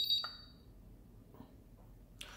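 IMAX B6 balance charger beeping as its Start button is pressed to begin a discharge: one short, high-pitched beep lasting about half a second.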